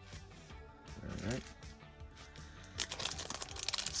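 Foil trading-card pack wrapper crinkling and crackling as it is pulled and torn open, starting about three seconds in.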